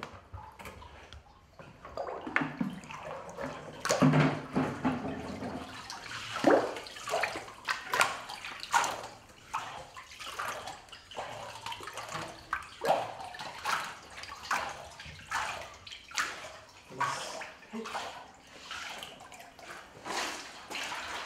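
Water sloshing and splashing in a large papermaking vat, in repeated irregular surges.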